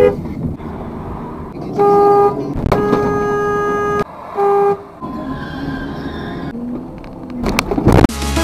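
Car horns honking over road and engine noise picked up by a dashcam's microphone: a short honk about two seconds in, a longer blast of over a second, then another short honk. A few sharp knocks come near the end.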